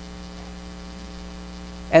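Steady electrical mains hum with a low buzz in the audio system, filling a pause in speech; a man's voice starts again right at the end.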